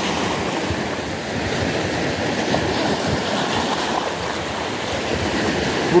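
Small sea waves washing in over a rocky shoreline, a steady wash of surf.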